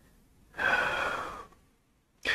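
A man's single audible out-breath, a sigh-like exhale starting about half a second in and fading away over about a second. It is the release of a breath that was held for a moment.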